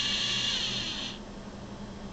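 Small DC motor with an encoder, driven by a speed controller, spinning its wheel with a high whine; the pitch falls and the whine stops about a second in as the motor reaches its commanded position.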